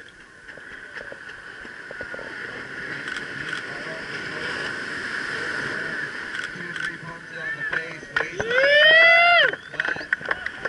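Surf washing up the beach under a steady wash of crowd noise, then near the end a loud whoop from a voice, rising in pitch and held for about a second before breaking off.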